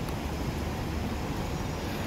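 Steady outdoor city background noise, mostly a low rumble with an even hiss above it.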